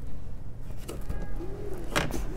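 Rear seat back of a Ford Escape being released and folded down, with a sharp latch click near the end over a low steady rumble. A short low coo-like note comes shortly before the click.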